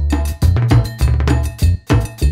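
Upbeat background music with a steady percussive beat, sharp repeated hits over a strong bass.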